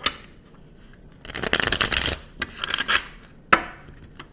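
A deck of tarot cards being riffle-shuffled by hand over a wooden table: a long fast riffle about a second in, a shorter one near three seconds, and a few sharp taps of the cards.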